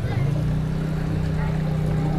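A steady low hum at an even pitch, starting just after the beginning.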